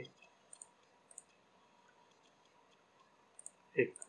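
Computer mouse button clicks: three soft pairs of short clicks, two near the start and one near the end.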